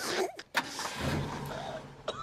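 A van's engine idling steadily, after a sharp click about half a second in.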